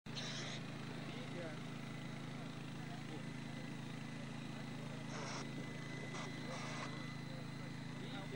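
Faint, indistinct voices over a steady low hum, with a few short bursts of hiss.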